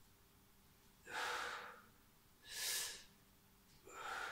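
A man breathing hard through his press-ups: two forceful breaths, about a second in and just before the three-second mark, with a third starting right at the end, each timed with a lowering or a push.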